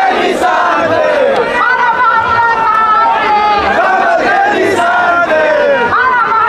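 A large crowd shouting, many voices overlapping in a loud, continuous mass.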